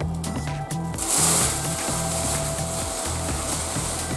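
A thin plastic carrier bag rustling and crinkling as it is handled, starting about a second in, over background music with a repeating bass line.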